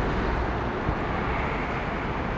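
City street traffic: a steady rumble of vehicles and tyre noise on the road.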